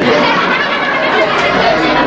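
Theatre audience laughing together at a punchline, a steady wash of many voices.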